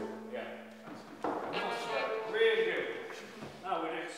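The last chord of a string ensemble dies away in a reverberant church, its low cello and bass notes lingering under a second. About a second in, quiet indistinct voices follow for a couple of seconds.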